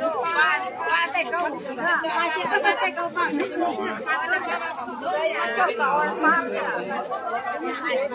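Many voices talking at once: the steady chatter of a dense crowd of shoppers and vendors, with no one voice standing out for long.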